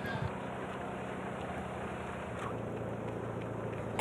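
Faint, steady outdoor background noise with a low hum under it.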